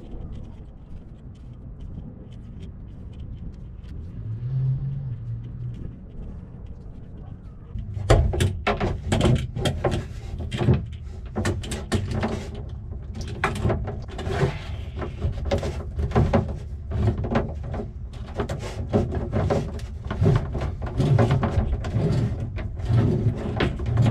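Handling noise from taped-together hydraulic steering hoses being fed by hand through a hole in a boat's deck. Irregular knocks, scrapes and rustles start about eight seconds in, after a stretch of low rumble.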